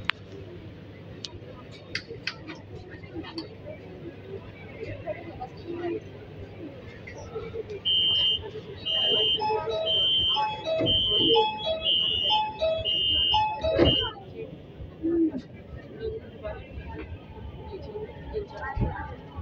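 Metro train door-closing warning: a high electronic beep repeating about seven times over some six seconds, starting a little before halfway in. The sliding doors then shut with a knock.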